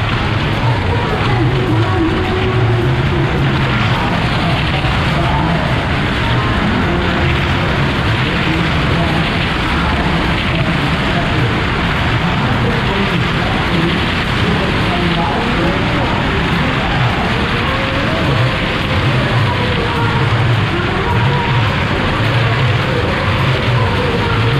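Several small cars running continuously around the steep wooden wall of a well-of-death pit, engines held under load in a dense, loud rumble, with music and crowd voices mixed in.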